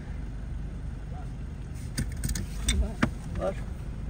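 Car engine idling, a steady low rumble heard from inside the cabin, with a few sharp clicks in the second half.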